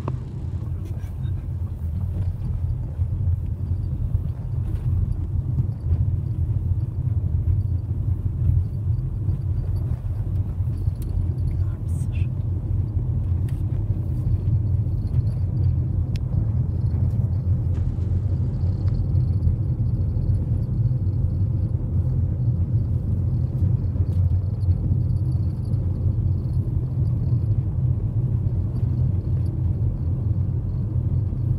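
Steady low rumble of a car driving, heard from inside the cabin: engine and tyre noise.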